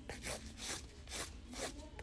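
Hand nail file rasping over the free edge of a gel-composite-sealed fingernail in quick short strokes, about four a second, with light pressure so as not to knock off the composite.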